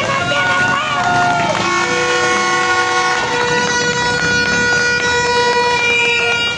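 A long, steady horn blast, a single held note with a rich buzzy tone, starting about a second and a half in, lasting about five seconds and cutting off sharply, preceded by brief voices.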